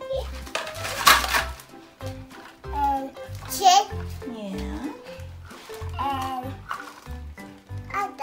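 Background music with a steady beat, with a small child's voice babbling and vocalizing over it.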